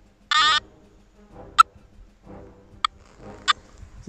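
Nokta Makro Gold Finder 2000 metal detector giving one short buzzy tone, then three brief sharp pips, as its coil passes a stone meteorite: a weak response.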